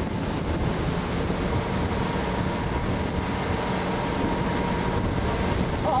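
Small boat's motor running steadily, with wind buffeting the microphone and water rushing past the hull.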